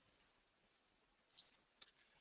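Near silence, broken by two faint computer mouse clicks about half a second apart near the end.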